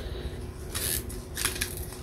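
Bottle-top pepper grinder twisted by hand, cracking black peppercorns in a few short grinding bursts, the longest about a second in.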